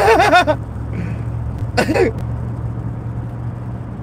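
Steady low hum of a car's engine and road noise heard inside the cabin while driving. A man laughs briefly right at the start, and there is one more short vocal sound about two seconds in.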